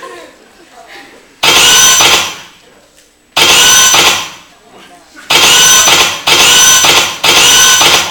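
Dance-routine soundtrack played loudly through the stage speakers: bursts of a processed, voice-like sound effect about a second long, separated by near-quiet gaps, with three bursts back to back near the end.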